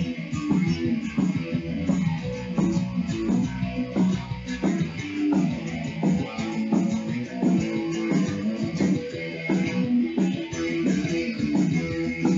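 Electric guitar played in an instrumental passage between sung verses, with picked chords and notes in a steady rhythm.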